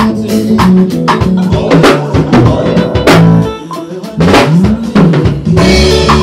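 A live band playing an instrumental groove: a drum kit keeping a steady beat with kick and snare under a bass line, with electric guitar and keyboard. The music dips briefly a little past the middle.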